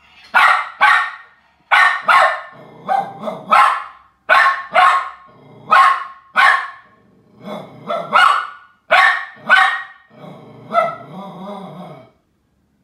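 A small dog barking repeatedly, about fifteen sharp barks often in quick pairs, with low growling between them, loudest near the end. It is alarm barking at a Halloween skull decoration whose light flicks on and off, which scared him.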